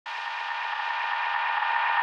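Sustained electronic synthesizer chord that swells steadily louder, the build-up of an intro's electronic music.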